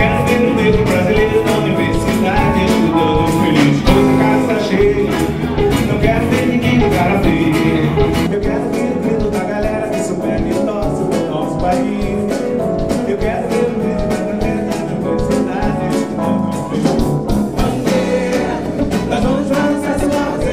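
Live band playing a song, with acoustic and electric guitars, bass guitar, drums and keyboard under singing.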